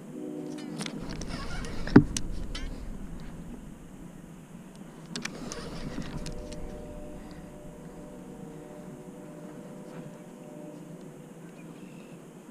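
Conventional fishing reel whirring steadily under the load of a big blue catfish on the line, with one sharp click about two seconds in. The whir stops near the end.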